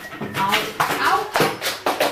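A person's voice without clear words, cut through by several sharp knocks or taps.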